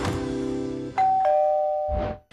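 The tail of a theme tune's held chords fades out. Then a two-note ding-dong chime sounds, a higher note followed a quarter-second later by a lower one, both ringing on until they cut off.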